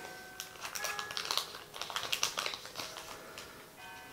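Crinkling of a foil card-booster wrapper and the rustle of trading cards being slid out by hand, a run of small irregular crackles and clicks. Church bells ring faintly in the background, their tones coming and going.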